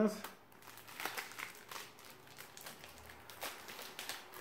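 Tight plastic shrink-wrap being picked at and pulled off a Blu-ray case, with irregular light crinkling and crackling.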